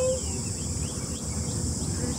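Insects droning steadily in a high, even hiss over low wind rumble on the microphone, with a person's held humming note trailing off just after the start.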